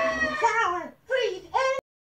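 Cartoon character voices screaming in fright: a high-pitched scream held for about half a second, then three short cries that each fall in pitch. The sound cuts off abruptly near the end.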